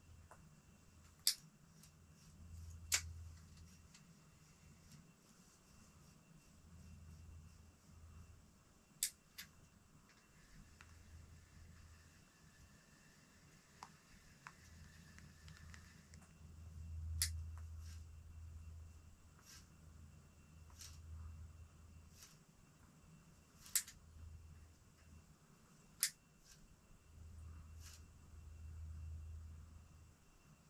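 Quiet ambience inside an ice-fishing shelter: scattered sharp clicks, about a dozen at irregular intervals, over soft low rumbles that swell and fade and a faint steady high tone.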